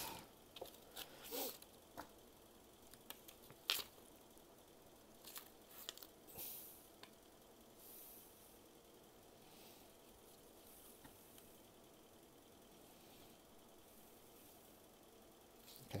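Faint hand-handling noises from adjusting a laser interferometer set-up: a few light clicks and short paper-like rustles in the first seconds, the sharpest click about four seconds in, then near-silent room tone.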